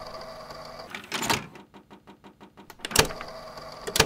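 Mechanical clicks and clacks over a faint steady hum: a burst, then a quick run of about ten clicks a second, then two sharp clacks near the end.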